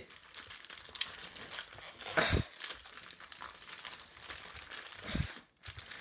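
Plastic courier mailing bag crinkling and rustling as hands pull it open and dig inside, with a louder rustle about two seconds in and a soft thud near the end.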